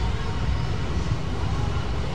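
Steady low rumble of vehicle engines running as carnival floats move off, with a constant outdoor background noise and no distinct single event.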